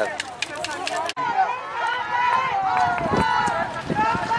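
Voices of players and people on the sideline calling out across an open field, with an abrupt cut in the sound about a second in.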